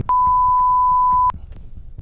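A censor bleep: one steady, high, pure beep just over a second long that cuts in and out abruptly. It is dubbed over the answer to a question about where she lives, hiding the address.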